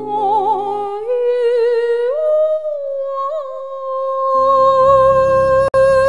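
A woman's voice through a microphone carrying a wordless melody with vibrato, climbing in steps to a long held note. The backing accompaniment drops away for a few seconds, then comes back under the held note, and there is a brief cut in the sound shortly before the end.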